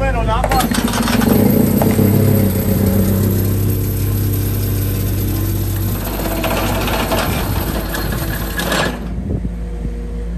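An engine running steadily. A loud rushing hiss lies over it from about half a second in and cuts off suddenly near nine seconds.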